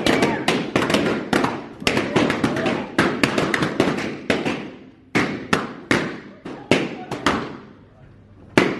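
A column of party balloons being burst by a group: a rapid, dense string of pops for the first few seconds, then single pops spaced further apart until they stop about seven seconds in.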